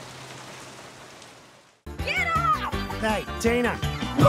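Steady rain falling, fading away over the first two seconds. After a moment of silence it gives way to bright music with swooping, sliding notes.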